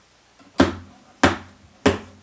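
Acoustic guitar struck in three short, evenly spaced strums about two-thirds of a second apart, a steady count-in beat before a song.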